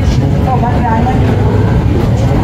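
Airport terminal background noise: a steady low rumble with faint voices in the background.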